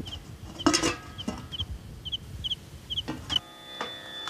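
Birds in the background: short paired chirps repeating about twice a second, with a louder clucking call about a second in and another near three seconds. A string-instrument note comes in near the end.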